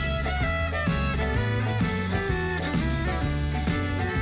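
Fiddle playing an instrumental break over a country band backing of electric guitars and drums.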